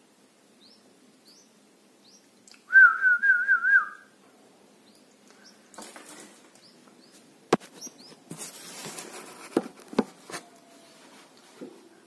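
Red-whiskered bulbul nestlings cheeping faintly, short high chirps about twice a second. About three seconds in, a loud warbling whistle lasts just over a second, and clicks and rustles of handling follow in the second half.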